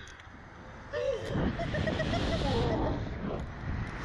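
Riders laughing on a slingshot ride. A burst of wavering laughter starts about a second in and lasts about two seconds, over a steady low rumble of wind on the microphone.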